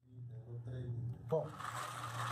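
Brass cartridge cases being swished by hand in a bowl of soapy water, a soft rustling from a little past halfway, over a steady low hum. A brief voice sound comes just before the rustling.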